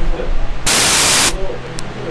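A loud burst of static hiss lasting well over half a second, starting a little after halfway into the clip, against faint muffled voice. It is one of a run of hiss bursts about two seconds apart, typical of a corrupted or glitching audio track.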